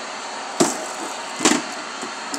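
Two sharp plastic clacks about a second apart, from toy wrestling action figures being handled and knocked together.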